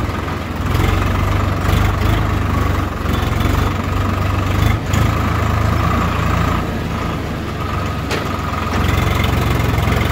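Swaraj 744 FE tractor's three-cylinder diesel engine running steadily while the tractor drives along.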